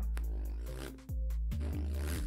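Beatboxed sub-bass (808) lip roll: a deep buzzing bass tone from the lips held in an O and tightened in the center rather than at the sides. Two held notes, the first fading out about a second in and the second starting right after.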